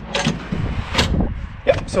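Aluminium cooler slider carrying a portable fridge-cooler pushed back in on its drawer slides: a sliding, rolling noise with one sharp click about a second in.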